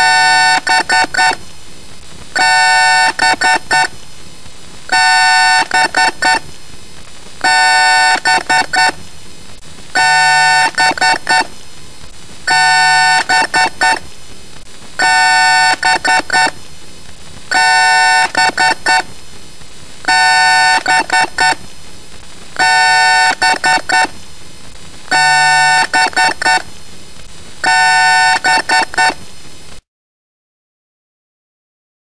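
Electronic alarm-like beeping sound effect that repeats in a loop about every two and a half seconds: a quick run of short beeps, then a longer tone. It cuts off abruptly near the end.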